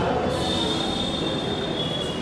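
Microphone feedback through the public-address system: a steady high-pitched squeal over the hall's background noise, dipping slightly in pitch near the end.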